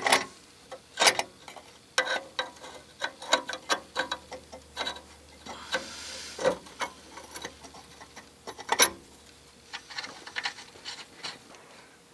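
Irregular metal clinks, taps and scrapes as a rusty exhaust pipe, its flange and a donut gasket are worked up onto the exhaust manifold studs. A few sharper knocks stand out, about a second in, two seconds in, near the middle and about nine seconds in.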